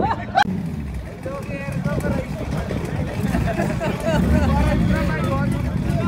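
Cars' engines running at idle, with a low rumble that grows louder about four seconds in, under people talking.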